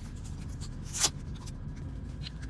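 Fingers scraping and picking at old adhesive and pad residue on the rim of a plastic headphone ear cup, with one sharp click about a second in.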